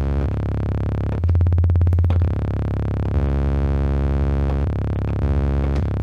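Behringer RD-8 low tom retriggered by rapid note repeats, the hits fusing into a buzzy, sawtooth-like bass tone. The pitch steps to a new note several times as the note-repeat rate is switched, with a louder, higher note lasting about a second, starting about a second in.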